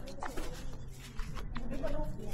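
Indistinct voices of people nearby, in short pitched fragments, with a couple of sharp clicks; it quietens briefly about a second in.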